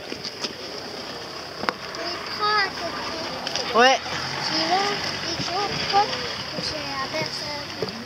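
People's voices talking in the background, with a short spoken "oui" about four seconds in, over a steady outdoor hiss.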